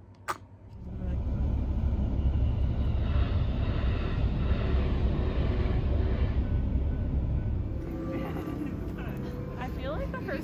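A commuter train running past close by at a level crossing, heard from inside a car: a loud, steady low rumble that builds in about a second in and eases off somewhat near the end. A single sharp click comes just before it.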